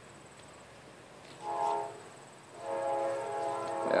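A horn sounding twice with a steady, unchanging pitch: a short blast about one and a half seconds in, then a longer one from about two and a half seconds in.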